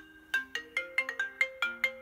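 Smartphone ringing for an incoming call: a melodic ringtone of short, bright notes in a quick run, about five a second.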